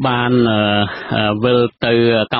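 A man speaking Khmer, narrating a news report, with a drawn-out delivery and a short pause about a second in. The voice is narrow-band, with no highs above about 4 kHz, as in a radio broadcast.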